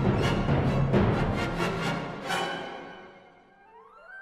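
Symphonic band music with timpani, with fast, driving repeated accented chords. A final heavy hit comes about two seconds in and dies away, and a faint rising tone follows near the end.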